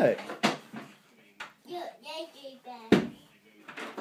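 A young child's voice in the background, with a few sharp clicks and knocks, the loudest about three seconds in.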